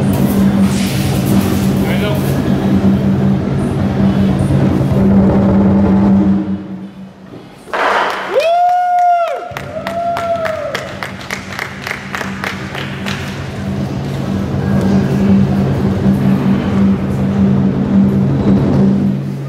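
Lion dance percussion ensemble (drum, cymbals and gong) accompanying a high-pole lion routine. It drops away sharply about seven seconds in, then comes back with rapid strikes and two rising-and-falling pitched calls.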